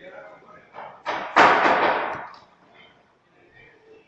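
People's voices in a large echoing shed, with a loud, sudden, noisy burst about a second in that lasts about a second.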